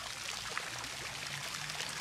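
Water splashing steadily in a tiled fountain basin: an even, continuous rush of falling water.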